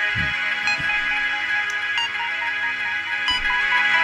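A music track played through a pair of small oval speakers driven by an XY-P15W Bluetooth amplifier board, with deep drum thumps about a quarter second in and again past three seconds under repeating bright notes.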